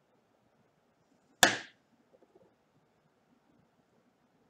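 A penny being tossed: one sharp smack as the coin comes down, with a brief ring, then a few faint ticks.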